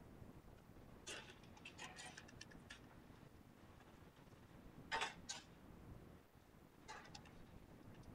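Faint clicking of the plastic keys of a Texas Instruments scientific calculator as a division is keyed in: a quick run of presses about a second in, a couple of louder clicks midway and a few more near the end.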